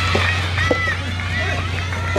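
High-pitched young women's voices calling out during a soft tennis rally, with a couple of short knocks of the rubber ball being struck, over a low steady hum.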